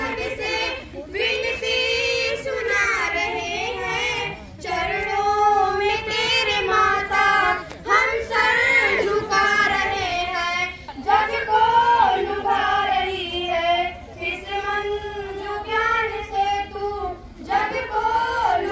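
Two schoolgirls singing a song together into a microphone, unaccompanied, in long held phrases with short pauses for breath.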